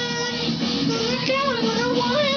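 A teenage boy singing a smooth, wavering melody line without words or beatbox percussion.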